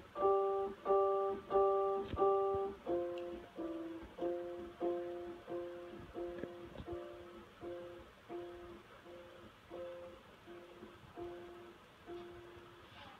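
A toddler playing a portable electronic keyboard, one note or chord at a time about every 0.6 s. Four loud ones come first, then a long, even run of softer notes that moves between a few pitches and slowly fades.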